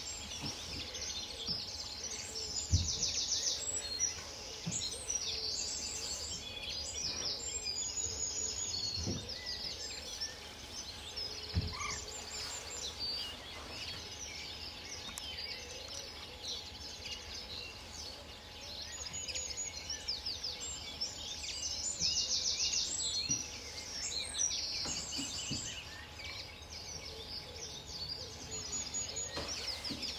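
Small songbirds singing in bursts of fast, high trills and twittering, busiest near the start and again about two-thirds of the way through, over a steady outdoor hiss. A few brief low thumps, the sharpest about three seconds in.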